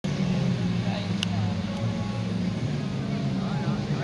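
Autocross race cars' engines running in a steady low drone, with faint voices in the background and a brief click about a second in.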